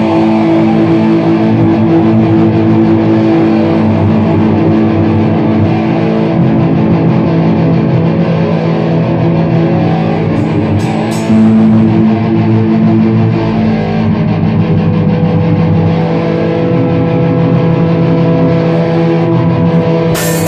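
Electric guitar playing held, ringing chords without drums, with a new chord struck about halfway through.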